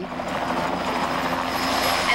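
Helicopter running: a steady, even rush of engine and rotor noise.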